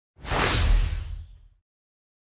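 Logo-intro sound effect: a single whoosh over a deep boom, swelling up quickly and fading away within about a second and a half.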